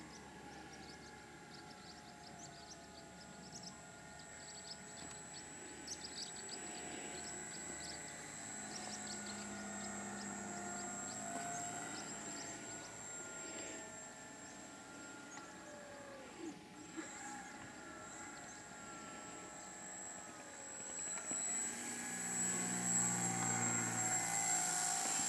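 Motor and propeller of a small model airplane flying overhead, a faint drone that wavers and slides in pitch as it circles. It grows louder near the end as the plane passes close.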